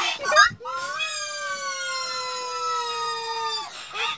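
A long wailing cry, held for about three seconds and slowly falling in pitch, after a couple of short wavering yelps at the start. The audio has the pitch-shifted sound of a 'G Major' edit.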